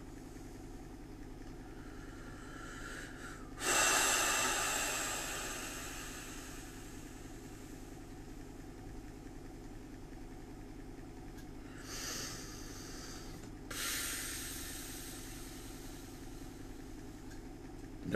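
A person breathing out heavily close to the microphone three times: a long breath about four seconds in, a short one near twelve seconds, and another long one soon after, over a steady low room hum.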